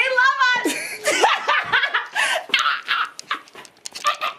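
A young man and woman celebrating with excited vocalising: a high squeal with a wavering pitch at the start, then shouting and laughter.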